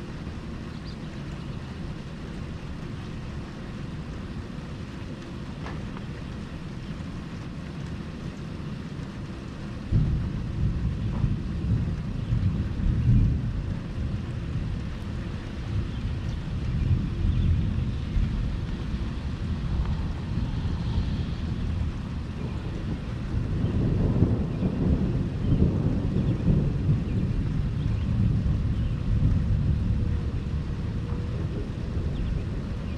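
Thunder over steady rain. A deep rumble starts suddenly about a third of the way in, rolls on with uneven swells, and builds again near the end.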